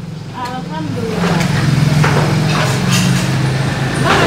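A motor vehicle engine running close by, its steady low hum swelling about a second in, with voices in the background.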